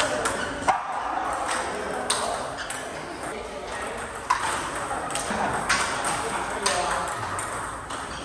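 Table tennis balls struck in a multi-ball drill: sharp, regular clicks of the celluloid ball on the paddle, including one faced with short-pimpled rubber, and on the table. The clicks come about once every second to second and a half.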